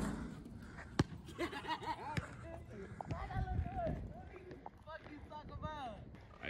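Faint voices talking, with one sharp knock about a second in and a smaller one a little after two seconds.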